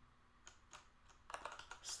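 Faint, scattered keystrokes on a computer keyboard, a handful of separate key presses.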